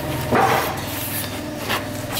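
Metal straightedge scraping and rubbing along the fresh mortar edge of a concrete block: one short gritty scrape about half a second in and fainter scrapes near the end, over a steady low hum.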